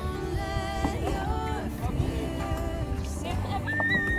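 Background music: a song with sustained, gliding melody notes over a steady low backing.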